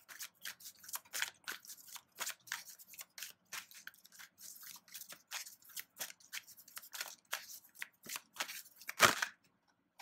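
An Angel Answers oracle card deck being shuffled by hand: a long run of quick, irregular card flicks and taps. There is a louder thump about nine seconds in, and the shuffling stops about a second before the end.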